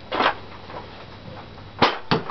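Nerf Vulcan EBF-25 belt-fed foam-dart blaster fired once in single-shot mode: a softer short knock about a quarter second in, then a sharp, loud pop near the end as the dart is launched.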